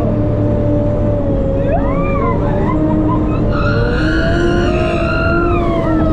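Sherp amphibious ATV running under way, heard from inside its cabin: a loud, steady engine and drivetrain drone with a constant whine over it.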